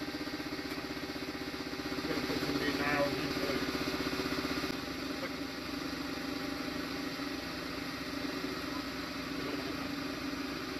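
Air compressor running steadily with an even, rapid pulsing, keeping a pneumatic nail gun's air line charged; it is a little louder for a few seconds about two seconds in.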